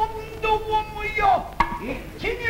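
Nagauta stage music: voices holding long, wavering sung notes, with a single sharp percussive strike about one and a half seconds in.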